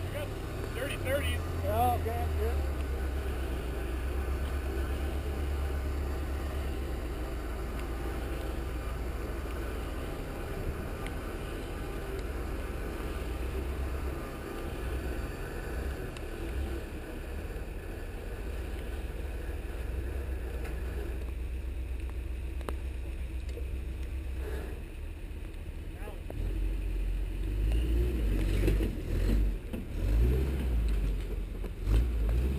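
Lifted pickup truck's engine running at low revs as it crawls over large rocks, its note picking up near the end.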